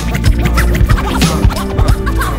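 Hip hop track with DJ turntable scratching over a heavy bass beat and drum hits, without vocals here.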